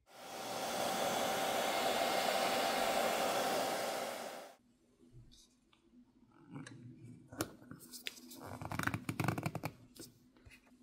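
A hair dryer blows steadily for about four and a half seconds with a steady hum in its rush, heating the phone's glass back plate to soften the adhesive, then cuts off. After it come light clicks and rubbing as a suction cup is worked on the back glass.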